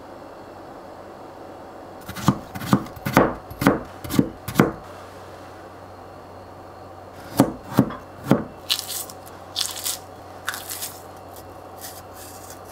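Kitchen knife slicing a peeled cucumber on a plastic cutting board: a quick run of about seven crisp cuts, a pause, then three more cuts followed by scraping and rustling.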